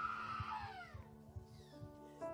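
A high, drawn-out wailing cry that holds one pitch and then falls away about half a second in, fading, over soft sustained keyboard music.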